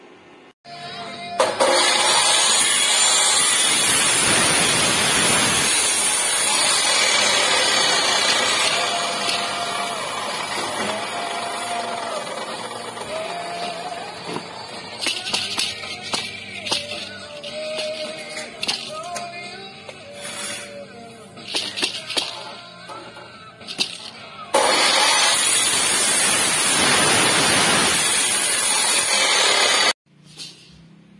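Abrasive chop saw cutting steel tubing: a loud, steady grinding noise that starts about a second in and fades after several seconds, then returns for the last five seconds. Background music plays in the middle.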